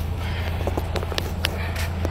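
Footsteps on pavement, a few short sharp steps, over a steady low rumble.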